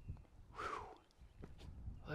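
A man's single breathy exhale about half a second in, with a few faint footsteps on a dirt path and a low rumble underneath.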